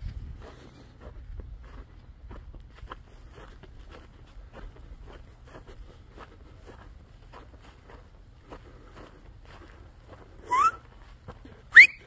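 Cattle grazing on dry grass: a steady run of soft crunching and tearing clicks as they crop the veld. Near the end, two short, loud rising whistle-like calls sound about a second apart.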